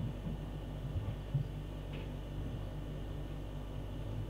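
Quiet room tone: a steady low hum with faint hiss, and a few soft small knocks a second or so in.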